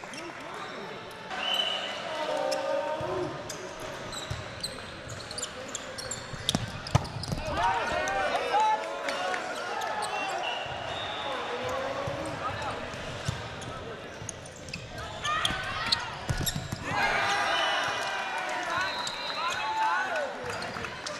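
Men's volleyball in an echoing gym: players shout and call out over one another, loudest in two bursts around eight seconds and from fifteen seconds on, with sharp ball hits and bounces on the hard court between.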